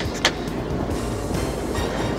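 Steady low rumble of a fishing boat's engine with wind and water noise, under background music; a single sharp click about a quarter of a second in.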